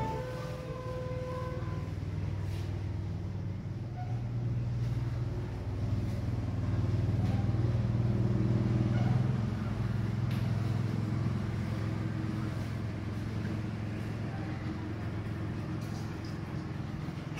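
N gauge model railway running: a steady low hum of the small locomotive motors and wheels on the track. It grows louder for a few seconds in the middle, then eases back.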